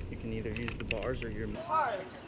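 Metal carabiners and a pulley clinking and jangling against a ropes-course cable, a few sharp clinks about half a second to a second in, over a low rumble and voices.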